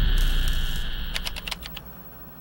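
Computer-keyboard typing clicks as a sound effect for a terminal-style text-reveal intro: a quick run of six or seven clicks about a second in. Under them, a low bass tone fades away.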